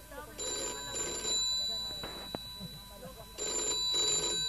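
A telephone-bell ring, most likely a mobile phone's ringtone, sounding as two short rings, then a pause of about two seconds, then two more rings near the end. Distant voices chatter underneath.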